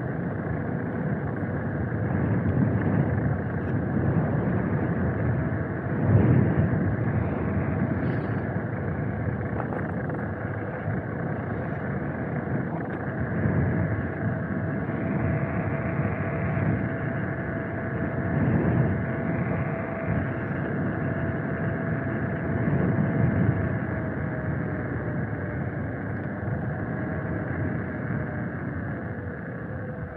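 Wind buffeting the microphone and tyre noise from a ride along an asphalt road, with gusty swells every few seconds. A thin steady motor whine runs underneath and falls in pitch near the end as the ride slows.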